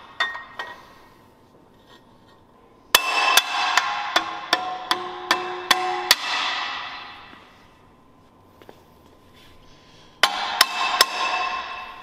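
A hammer tapping a billet adapter plate onto the dowels of a BMW M52 engine block: a quick run of about nine sharp taps, each with a metallic ring, then a few more taps near the end.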